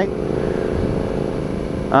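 A 2013 Hyosung GT650R's V-twin engine, breathing through a Danmoto aftermarket exhaust, running at a steady cruise with an even, unchanging note.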